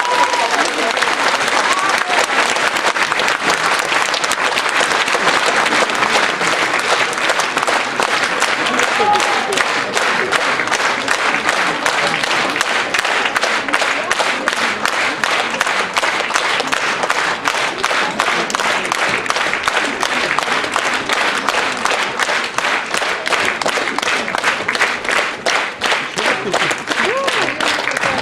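Audience applauding steadily and loudly after a soprano's aria. Toward the end the clapping thins into more distinct, evenly spaced claps.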